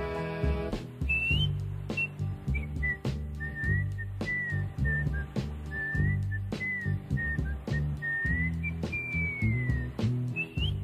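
A man whistling the closing melody of the soul song over the band's bass and drums. The whistling starts about a second in and ends with a long falling note near the end.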